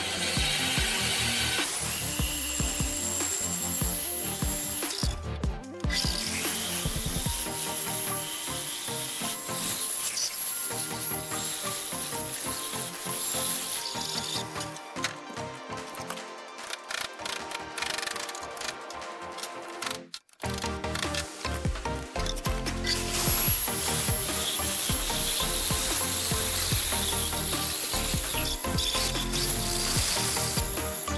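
Bandsaw cutting through a thick log round, heard under background music.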